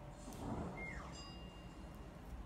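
Quiet room tone with faint rustling as fresh water clover stems are handled and their roots picked off, loudest in the first half.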